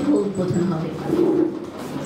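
A woman's voice speaking into a hand-held microphone, falling away near the end.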